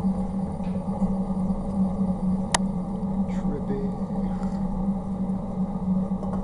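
Sticks burning in a rocket heater's feed chamber under strong draft: a steady low rushing noise, with one sharp crackle from the wood about two and a half seconds in.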